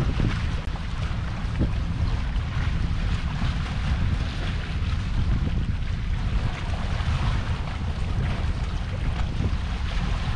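Wind buffeting the microphone in uneven low gusts over a steady wash of sea noise.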